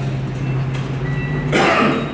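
A man's short throat-clearing noise close to a microphone, about one and a half seconds in, over a steady low hum.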